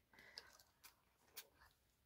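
Near silence with two faint short clicks, a little over a second apart, as a perfume bottle and its cardboard box are handled.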